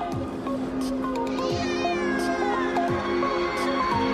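Background hip hop music with sustained synth notes and a deep, falling bass drum hit about once a second. About a second and a half in, a meow-like cry glides downward.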